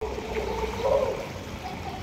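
Pool water splashing and lapping as children in armbands paddle in the shallow end.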